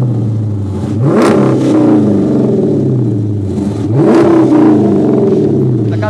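Dodge Challenger's 5.7-litre HEMI V8 idling through its dual-tip exhaust, blipped twice, about one second in and about four seconds in. Each time the pitch climbs sharply and then falls back to idle.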